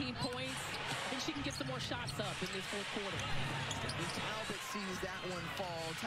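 Basketball game broadcast audio at low level: a ball dribbling on the hardwood court over arena crowd noise, with a commentator talking.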